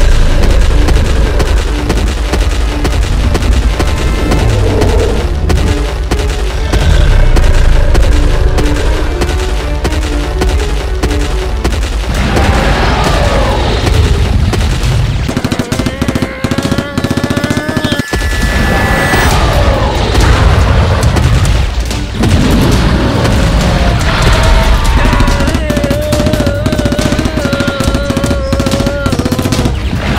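Dramatic action-film music mixed with rapid bursts of automatic gunfire sound effects and heavy booms.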